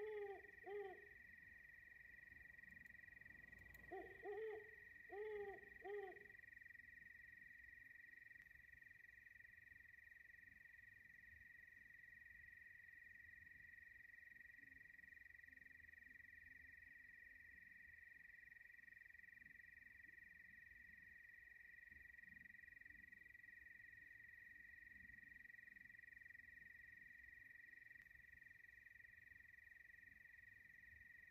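A few short animal calls, each rising then falling in pitch, in two groups within the first six seconds, over a faint steady high-pitched whine that runs on throughout.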